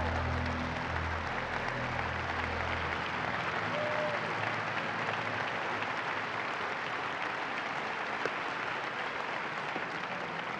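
Large congregation applauding, a steady wash of many hands clapping. Low held notes of background music fade out about three seconds in.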